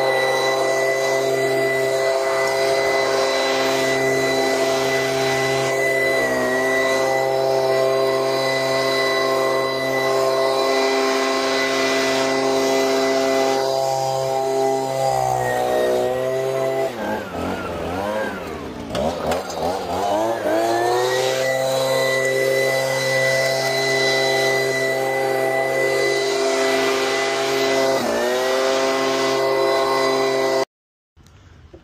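Leaf blower running steadily at high speed, blowing dirt and litter off bare ground. Its pitch dips briefly about six seconds in and again near the end, and for several seconds in the middle it falls and wavers before climbing back up.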